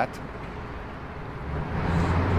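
Traffic noise from a nearby street, a steady hiss with the low rumble of a vehicle growing louder in the second half.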